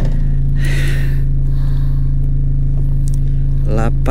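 Rally car's engine idling steadily, heard from inside the cabin with the car standing still. A brief hiss comes about half a second in.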